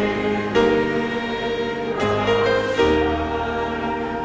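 A congregation singing a hymn together over a sustained instrumental accompaniment, with the chords changing every half second or so.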